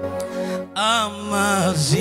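A man singing into a microphone over steady held backing chords: two sung phrases with a wavering vibrato, starting about three-quarters of a second in, the second sliding down in pitch near the end.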